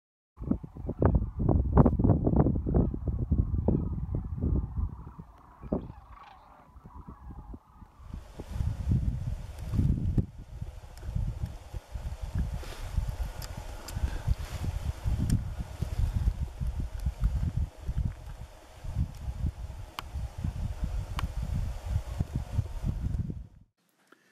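A flock of sandhill cranes calling, rattling and rolling, over a heavy, gusting low rumble of wind on the microphone. About eight seconds in the sound changes to a hissier outdoor recording that goes on to near the end.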